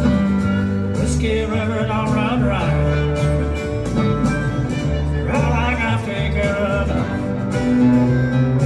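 A live country band playing: acoustic guitars over an upright bass, with a lead melody line weaving above.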